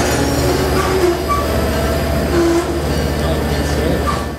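Railroad passenger coaches rolling past, a loud steady rumble of wheels on the rails, with short squealing tones from the wheels now and then.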